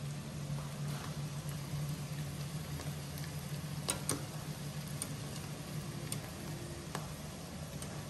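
Vegetables and eggs sizzling faintly in a pot on the stove over a steady low hum, with a few light clicks.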